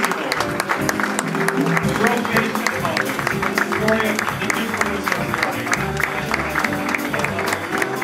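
Audience applauding as a live house band with upright bass and drums plays walk-on music.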